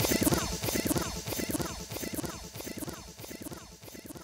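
Electronic music from a DJ mix fading out at the end of the set. A repeating falling sweep, about three a second, grows steadily quieter.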